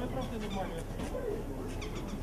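Faint, indistinct voices of several people talking in the background, none of them close.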